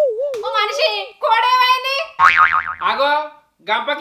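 A woman's voice wailing in a wavering, sing-song lament, the pitch wobbling up and down, in short phrases. About two seconds in there is a brief warbling, wobbling sound.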